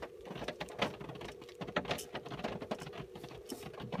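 Honda Insight's DC-DC converter being switched on and off rapidly by grounding its cut white-green control wire: a quick, irregular run of clicks and crackles over a steady hum.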